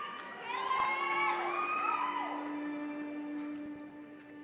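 Audience cheering with high-pitched whoops and shouts from young voices, loudest in the first two seconds. About a second and a half in, the music starts under it with a long held low string note.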